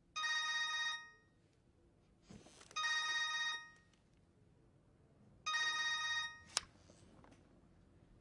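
Mobile phone ringing: three short electronic rings, each under a second long, about 2.7 seconds apart. A sharp click follows shortly after the third ring.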